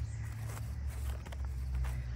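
Light rustling and a few soft knocks of garden produce being handled and picked out of a container, over a steady low rumble.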